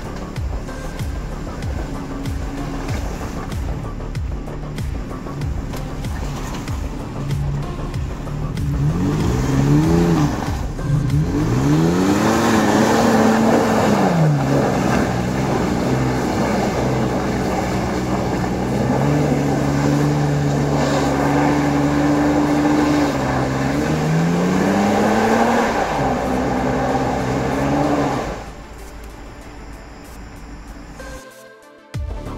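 Toyota FJ Cruiser's 4.0-litre V6 revving hard and repeatedly as it claws up a steep, slippery mud slope with its wheels spinning, the engine note rising and falling again and again. The engine sound drops away near the end.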